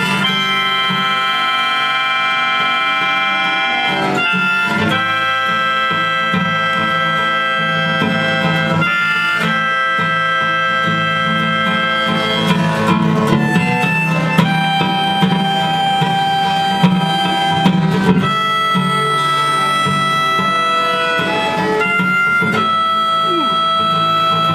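Live acoustic band: a harmonica leads with long held notes and chords that change every few seconds, over acoustic guitar and fiddle.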